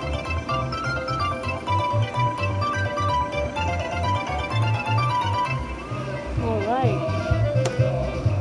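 Slot machine's win music: a bright plucked-string melody in quick stepped notes over a pulsing low beat, as the credit meter counts up a bonus-round win. Near the end comes a short wavering sound, then a sharp click.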